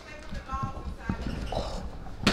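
A basketball bouncing on a hard store floor, a few irregularly spaced dull thuds, with a faint voice behind.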